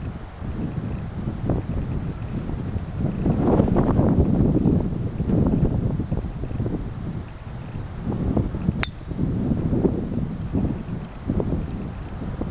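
Wind buffeting the microphone, with one sharp click late on as a golf driver strikes the ball off the tee.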